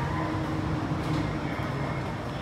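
Jakarta MRT train carriage heard from inside while running: a steady rumble with a low, even hum.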